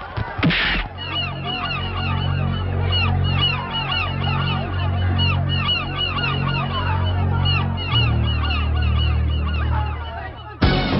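A dense chorus of bird calls, many short repeated arching cries, over a low steady drone whose pitch changes about eight seconds in. There is a brief loud burst just after the start.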